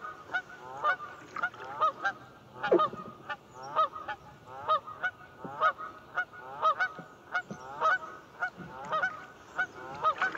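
Canada geese honking over and over, about two honks a second, with several birds calling at once.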